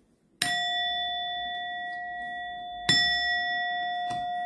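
A bell struck twice, about two and a half seconds apart. Each strike rings on with a long, slowly fading tone.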